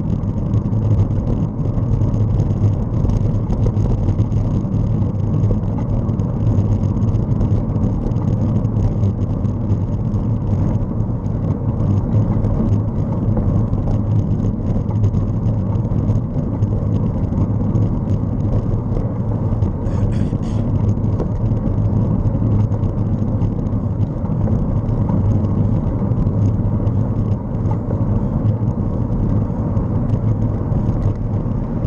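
Steady wind and road noise from riding along a street, a continuous low rumble with no engine note in it. About two-thirds of the way through comes a brief, sharp rattle.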